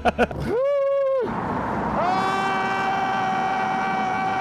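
Vehicle horn blasts over traffic noise: a short blast about half a second in, then a long, steady blast from about two seconds in.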